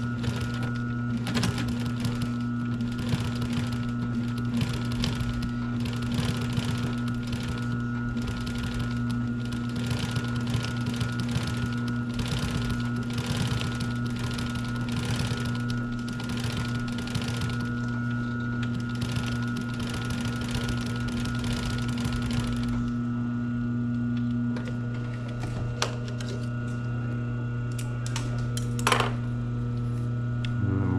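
Pfaff industrial sewing machine stitching a vinyl strip folded over piping cord to make piping: a steady motor hum under a rapid, continuous stitching clatter. The stitching stops about 23 seconds in, leaving the motor humming, and a couple of clicks follow near the end.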